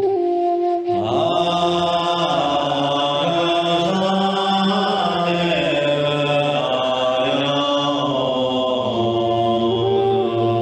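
Man chanting a Tibetan mantra in long held notes that step between pitches. About a second in, the sound thickens into many layered tones.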